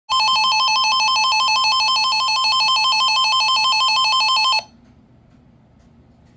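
First Alert weather radio sounding its warning alert: a loud electronic tone warbling rapidly between two pitches, signalling a severe thunderstorm warning. It cuts off suddenly about four and a half seconds in, leaving faint hiss.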